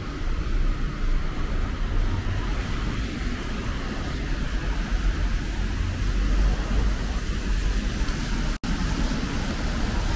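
Traffic passing on a wet city road: steady tyre hiss with a low engine rumble. The sound cuts out completely for an instant about eight and a half seconds in.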